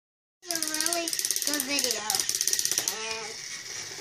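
Battery-powered Thomas the Tank Engine toy train's motor and plastic gears, a fast, even clicking while it is held on the track, stopping about three seconds in. A child's voice runs over it.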